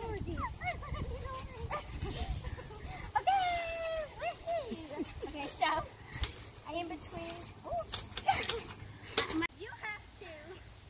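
Girls' high-pitched voices calling out, with a few thumps from bouncing on the trampoline mat.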